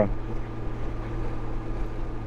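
Touring motorcycle cruising at highway speed, picked up by an in-helmet microphone: a steady engine drone under wind and road noise.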